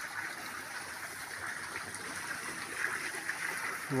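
Steady rush of running water, as from a small stream or channel flowing close by.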